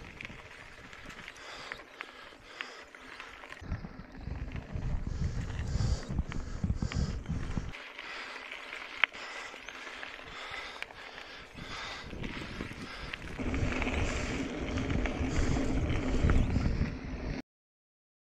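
Wind buffeting the microphone in gusts over the rumble and scattered clicks and rattles of a mountain bike rolling on a dirt road. It grows louder in the last few seconds, then cuts off suddenly.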